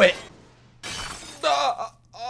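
A shattering sound effect from the anime's soundtrack, starting suddenly about a second in and fading, followed by a short line of dialogue.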